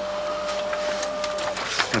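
A computer printer printing a page: a steady whine with small clicks that stops about one and a half seconds in.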